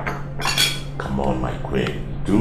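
Metal cutlery clinking and scraping against dinner plates, a few short sharp clinks.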